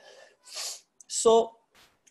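A man's short vocal sounds between sentences: a breathy hiss about half a second in, then one short voiced burst about a second in.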